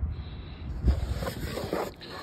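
Low rumble of wind and phone-handling noise on the microphone, with a light knock about a second in as a cardboard box is handled and opened.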